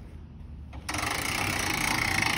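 Camper tent-lid winch starting up a little under a second in and running with a steady mechanical whir, winding in the strap that pulls the tent lid down.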